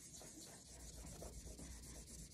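Faint rubbing of a cloth over the paper backing of a furniture transfer, burnishing it down onto the painted surface so the lifting areas stick.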